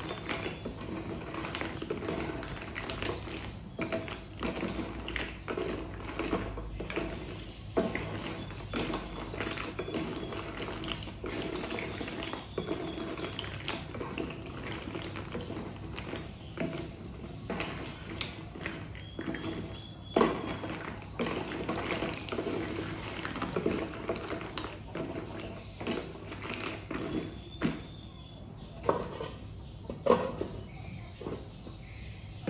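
Wooden spatula stirring snails in their shells in a pot of bubbling water: irregular clacks and knocks of shell on shell and against the metal pot. Near the end the lid is put on the pot with a knock.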